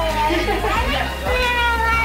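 A small child's voice and adult voices talking.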